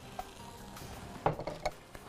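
A few light clinks and knocks of kitchen utensils and dishes, loudest about a second and a quarter in, over faint background music.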